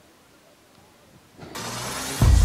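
Faint background of voices and a vehicle, then about one and a half seconds in a sudden loud whooshing rush of noise that swells, the lead-in to an intro sting.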